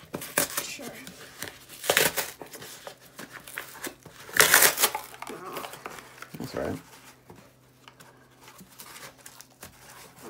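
A corrugated cardboard box being ripped open by hand: a series of tearing rips with crinkling between them, the loudest about four and a half seconds in.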